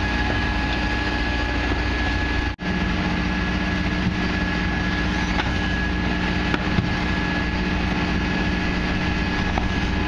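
Mercedes Econic refuse truck with a Faun Rotopress body running at the kerb, a steady engine hum with a constant high whine from its packing machinery, and a few light clanks. The sound cuts out for an instant about two and a half seconds in, and the low hum is stronger after.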